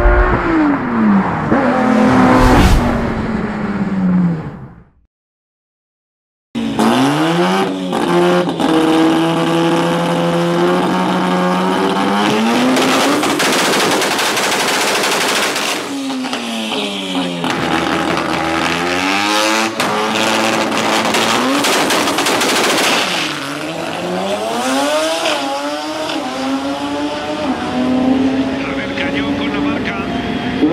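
Turbocharged 13B rotary engine of a Datsun drag car making a full-throttle pass. It holds steady revs at the line, then its pitch climbs through the gears and drops sharply at each upshift. The first few seconds are an intro sound effect, followed by a short silence.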